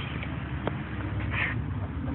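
A steady low background rumble with a faint hiss, and a single faint click less than a second in.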